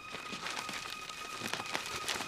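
Paper being handled: light rustling with small clicks and taps, over a faint steady high tone.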